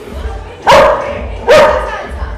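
A dog barking twice, about a second apart, loud over background music with a steady bass beat.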